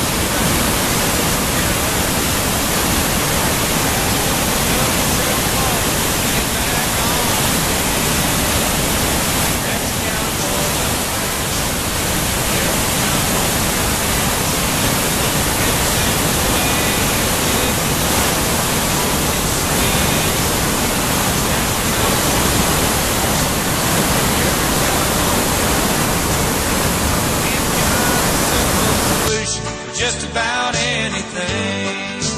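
Waterfall: white water pouring over rocks in a loud, steady rush. It cuts off suddenly near the end as country music comes in.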